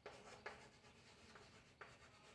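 Chalk writing on a blackboard: faint scratching strokes, with a light tap of the chalk about half a second in and another near the end.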